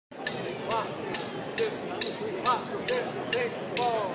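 Sharp clicks at an even beat, a little over two a second, counting in the tempo before the band plays, over a murmur of voices.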